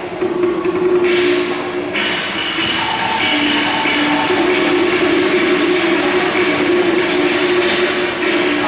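Cantonese opera ensemble playing an instrumental passage: a held melody line stepping between a few long notes over a continuous bright, noisy wash that thickens about a second in.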